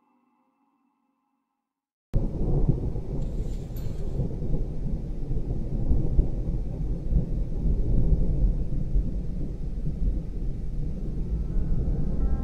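Near silence for about two seconds, then a thunderstorm sound effect starts suddenly: steady heavy rain with a deep, continuous thunder rumble.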